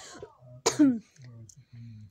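A person clears their throat in one short, loud burst about two-thirds of a second in.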